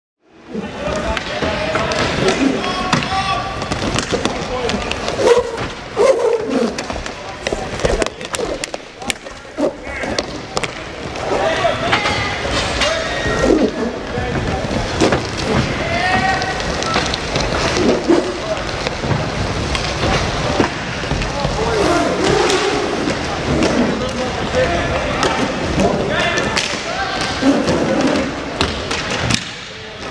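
Live inline hockey play in an echoing arena: skate wheels rolling and scraping on the plastic rink floor, many sharp clacks of sticks and puck, and shouting voices of players and spectators.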